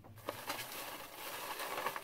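Rustling and crinkling of shredded paper packing filler being handled.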